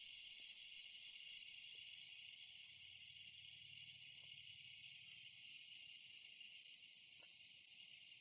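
Near silence: only a faint, steady high-pitched hiss.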